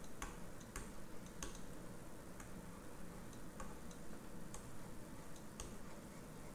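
Faint, sharp clicks at irregular intervals, roughly one a second, from a pen-input device as a word is handwritten onto an on-screen page.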